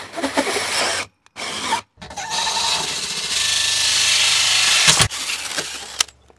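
DeWalt cordless drill driving a 2-inch hole saw through the motorhome's sidewall. It runs for about a second, stops, gives a brief burst, then cuts steadily for about three seconds before stopping abruptly near the end as the saw breaks through.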